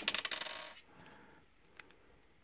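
A small hard plastic toy piece dropping onto a wooden table: one sharp hit, then quick rattling bounces that die away within a second. A faint click follows near the end.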